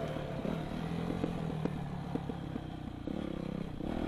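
Yamaha YZ250F four-stroke single-cylinder dirt bike engine running while the bike rides over rough dirt, with scattered knocks and rattles from the bike. The engine gets louder about three seconds in.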